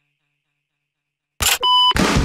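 Silence, then near the end a brief burst of noise followed by a single electronic beep of about a third of a second, held at one steady pitch.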